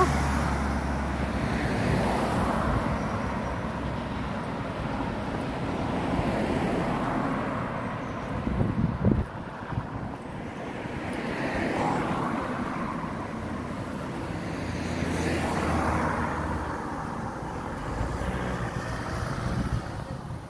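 Road traffic: cars driving past one after another on a village street, each passing swelling and fading.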